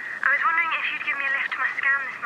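A voice speaking through a mobile phone, thin and narrow-sounding like a phone line.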